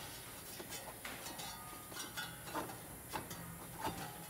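Faint, scattered clicks and light metal taps, about six in four seconds, from hand work on a GMC's loosened fan clutch as it is unscrewed from the water pump pulley.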